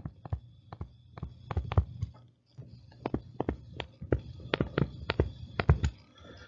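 Stylus tapping and clicking on a tablet screen while handwriting, a string of quick, irregular taps.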